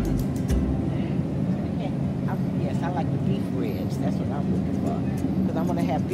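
Indistinct voices talking, from about two seconds in, over a steady low background hum.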